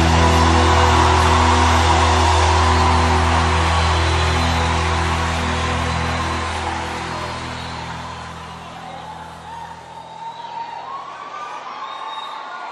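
A live worship band holds a final sustained chord over steady bass, and it fades out over the second half. Near the end a crowd's voices come up as a quieter wavering cheer.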